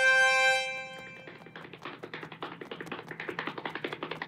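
Herald trumpet fanfare holding its final chord, which ends about a second in, followed by a fast run of small, light footsteps that grow louder as the walker approaches.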